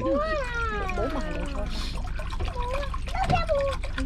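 Water being poured from a plastic bottle into a stainless steel pot, a trickling splash that builds in the second half, with voices talking over it.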